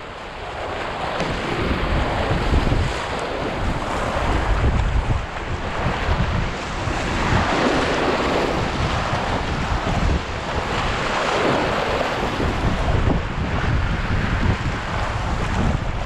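Whitewater river rapids rushing and splashing over the nose of an inflatable paddleboard, a steady roar that swells and eases as the board rides the waves, with wind buffeting the camera microphone.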